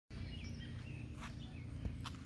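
A few faint bird chirps over steady outdoor background noise with a low hum.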